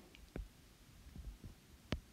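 Stylus tapping on a tablet's glass screen while handwriting: a few short ticks, a faint one about a third of a second in and the sharpest just before the end.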